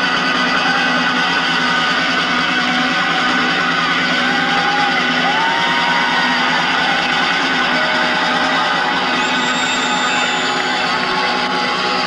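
Live rock band's amplified electric guitars ringing out in a long held chord at a song's end, with crowd noise and a few rising-and-falling shouts or whistles over it.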